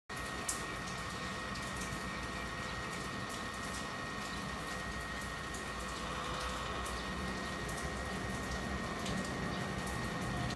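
Lenovo Z500 laptop's CPU cooling fan running, a steady whir with a thin, constant high whine on top: the fan is noisy, which is why it is being replaced.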